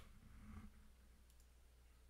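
Near silence: faint room tone with a faint click or two, likely from a computer mouse.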